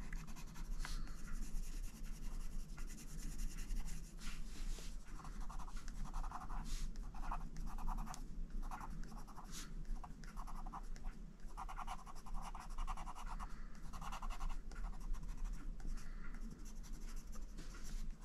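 Prismacolor Premier coloured pencil scratching on paper as a small area is shaded in short, quick back-and-forth strokes, coming in close runs from about five seconds in.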